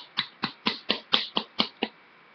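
A small makeup product shaken in the hand, clicking in an even rhythm of about four clicks a second, nine or ten in all, that stops just before the end.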